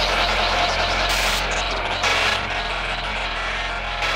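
Psytrance track in a breakdown: synthesized noise sweeps and whooshes over a steady low bass drone, with the driving beat thinned out, and a brief bright hiss about a second in.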